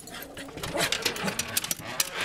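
Excited West Highland White Terriers moving about, with a rapid patter of clicks and small knocks, mixed with rustling from the camera being handled; no barks.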